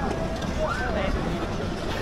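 Outdoor background of people's voices, with one brief voice about halfway through, over a steady low rumble of city noise.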